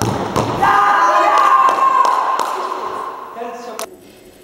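A football thudding off a foot or the keeper right at the start, then several more knocks of the ball bouncing around a reverberant sports hall, with a sharp knock near the end. Voices shout over it with long, held calls.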